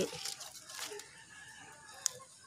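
A faint, distant chicken call, drawn out through the second half.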